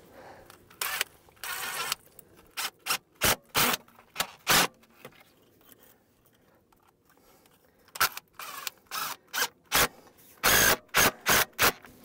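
Cordless driver run in short bursts, snugging down the hose clamps on a barbed fitting in 1¼-inch poly water line. Two longer runs come first, then a quick string of brief bursts, a pause of about three seconds near the middle, and another string of brief bursts.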